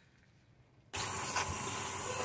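Near silence, then about a second in a kitchen tap starts running water onto plantain leaves in a metal colander in the sink, a steady even hiss of water.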